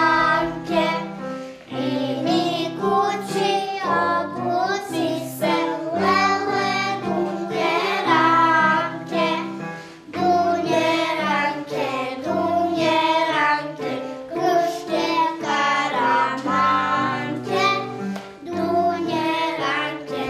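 A group of young children singing a song together in unison, accompanied by an accordion holding sustained chords underneath, with short breaks between sung phrases.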